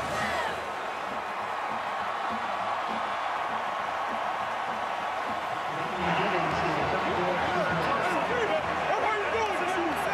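Large stadium crowd cheering and yelling in celebration of a touchdown. About six seconds in it gets louder, with individual voices shouting close to the microphone over the roar.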